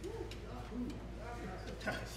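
Faint, quiet talking voices in the room, with a short soft click near the end.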